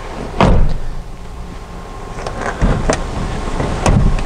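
A loud thump about half a second in, then a few lighter clunks and knocks, as the folding second-row seat of a 2016 Ford Explorer is handled.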